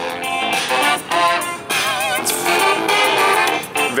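Guitar-based music played very loud through a TaoTronics TT-SK06 portable Bluetooth speaker, two 10-watt drivers with two bass radiators, heard from a few metres away.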